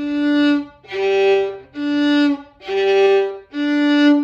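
Violin bowing a fourth-finger exercise on the G string: open G alternating with fourth-finger D, five separate bow strokes about a second apart, the last D held a little longer.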